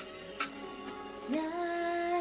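Pop song's instrumental backing track with a few sharp percussive hits. A woman's voice comes in about a second and a half in, sliding up into one long held sung note.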